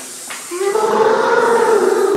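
A person's voice holding one long drawn-out note, a loud call or sung vowel that starts about half a second in.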